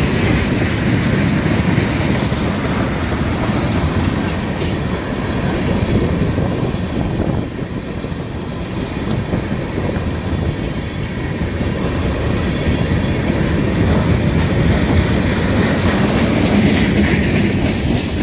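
Freight train's tank cars and open-top cars rolling past close by, their steel wheels running on the rails in a loud, continuous noise that dips briefly about halfway through.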